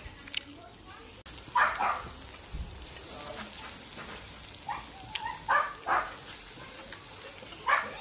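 Sausages and a burger sizzling over hot coals on a charcoal barbecue grill, a steady hiss.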